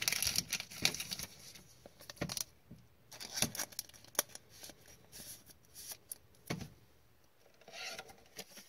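A trading card being slid into a rigid clear plastic toploader: intermittent rubbing and scraping of the card against the plastic, with small clicks from handling the holder.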